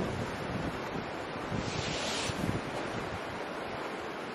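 Sea surf and wind on the microphone: a steady rushing wash with gusty low rumble, and a brief louder hiss swelling and fading about two seconds in.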